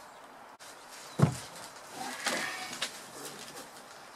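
Broken, rotten pieces of a wooden boat's sawn floor timber being handled and set down: one wooden knock about a second in, then scraping and rustling of wood against wood.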